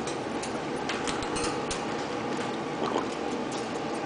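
Congo African grey parrot close to the microphone making soft, scattered clicking and ticking sounds over a steady hiss.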